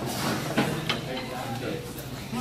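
Murmur of restaurant diners talking, with two sharp clinks of utensils against dishes about half a second and a second in.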